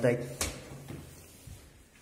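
A door handle and latch clicking sharply once about half a second in, then a fainter knock about a second later. The door is locked and does not open.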